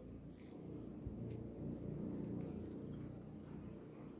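Faint handling sounds of grosgrain ribbon and sewing thread as thread is wound around the middle of a ribbon bow, with a few soft clicks over a low steady rumble.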